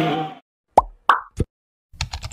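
Three quick pop sound effects, each dropping in pitch, about a third of a second apart, from an animated logo graphic. Before them a chanted noha fades out within the first half-second.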